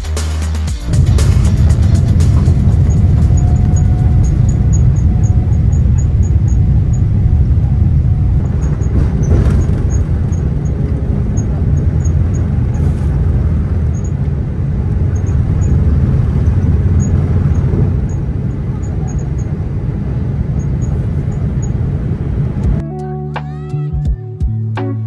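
Boeing 787's Rolls-Royce Trent 1000 engines at takeoff thrust, heard from the cabin over the wing during the takeoff roll: a loud, steady low rumble, with a faint whine rising in the first few seconds as the engines spool up. It cuts off abruptly near the end.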